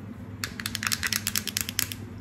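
Long acrylic fingernails tapping on a hard plastic ear cover: a quick run of about eighteen light clicks, starting about half a second in and lasting about a second and a half.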